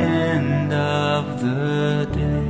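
A recorded hymn: voices singing a slow melody in long held notes over accompaniment.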